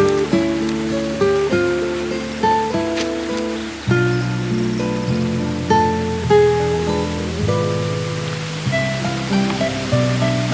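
Soft background music: held chords under a slow melody, with the bass changing about four seconds in and again near the end.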